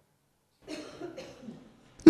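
A faint human vocal sound, cough-like, starting a little over half a second in and lasting about a second.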